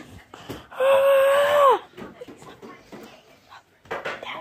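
A person's voice giving one held, high-pitched cry about a second long, falling in pitch as it ends, with light shuffling and handling noise around it.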